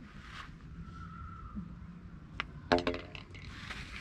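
A single sharp click of a mini-golf putter striking the ball, followed moments later by a brief loud vocal exclamation.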